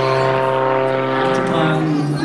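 Extra 330XS aerobatic plane's piston engine and propeller droning steadily overhead during a vertical manoeuvre, the pitch dropping slightly near the end.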